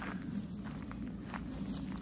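Footsteps of a person walking on a forest path, about four steps, over a steady low background hum.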